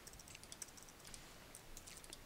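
Faint, scattered clicks of a computer mouse and keyboard over a near-silent room.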